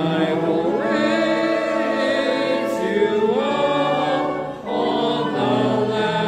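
A congregation singing a hymn together, long held notes with a brief break between lines a little before the end.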